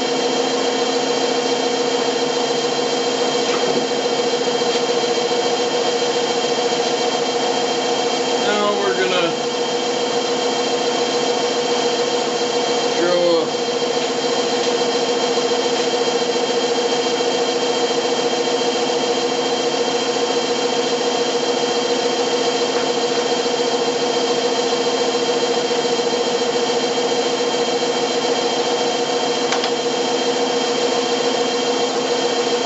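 Craftsman wood lathe running at a steady speed with a steady hum, spinning a small cherry workpiece. Two brief wavering squeaks come in about nine and thirteen seconds in.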